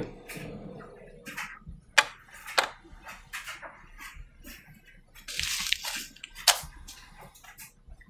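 Handling noises as a plastic filament spool and a plastic-wrapped silica-gel packet are set down on a printer bed. There are a few sharp knocks, the loudest about two seconds in and another just past six seconds, and a short burst of plastic crinkling between about five and six seconds.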